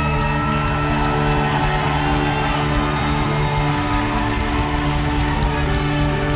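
Worship band playing a slow instrumental passage of long held chords, with a violin playing sustained notes over it.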